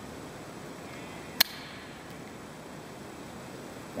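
A single sharp click about a second and a half in, from the grease gun's rubber plunger and barrel being handled as the plunger is worked back into the tube, over a steady low hiss.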